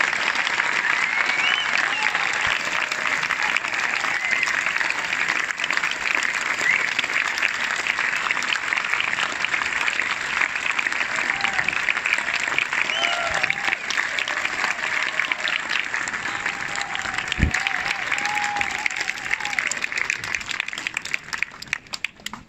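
Large audience applauding, with a few scattered cheers and calls. The clapping thins out near the end.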